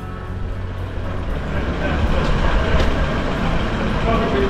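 Low, steady rumble of a slow-moving road vehicle, growing a little louder over the first second or so.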